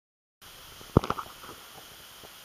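A loud short knock about a second in, followed at once by a quick run of smaller clicks, over a steady faint hiss.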